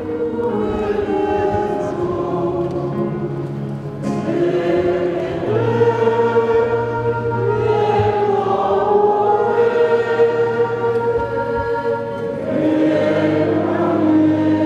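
A church congregation singing a slow hymn together in several voices, holding long notes, slightly louder from about five seconds in.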